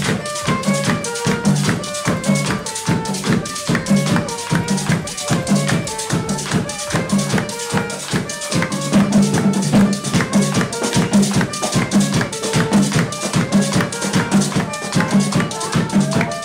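Live Dominican parranda percussion: a metal güira scraped in a fast steady rhythm over a laced hand drum and a bass drum beaten with a stick.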